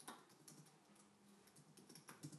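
Faint typing on a laptop keyboard: soft key clicks coming irregularly, the loudest right at the start.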